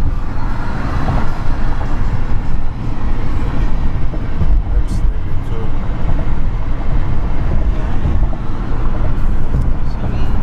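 Steady low road rumble inside a car's cabin while driving at highway speed: tyre and engine noise.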